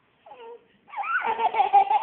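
Toddler laughing: a short falling squeal, then a long, loud run of laughter from about a second in.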